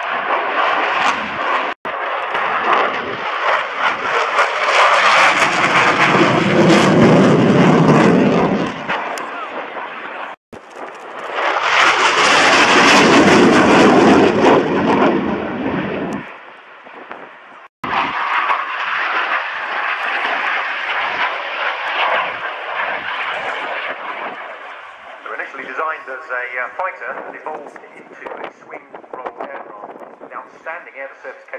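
Delta-wing fighter jet making display passes with its afterburner lit. The loud jet noise swells and fades twice, breaking off suddenly between the passes, then settles to a quieter, steady distant roar with faint voices near the end.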